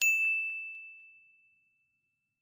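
A single high ding, struck once and ringing on one clear tone that fades away over about a second and a half.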